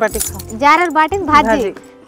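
Women's voices talking, with a brief metallic jingle near the start.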